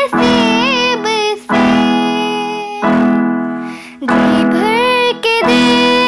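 A young girl singing a slow Hindi film melody with ornamented, gliding phrases, accompanied by her own electronic keyboard playing held piano-voice chords struck about every second and a half. One vocal phrase fills the first second and another comes in after about four and a half seconds, with only the keyboard chords between.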